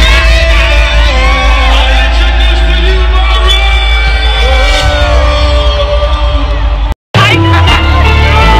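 Loud live concert music over an arena PA with heavy bass, with voices and singing from the crowd over it. The sound cuts out briefly about seven seconds in, then the music picks up again.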